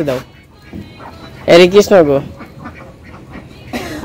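A woman's loud, drawn-out herding call to domestic ducks, about one and a half seconds in, with soft duck quacks around it.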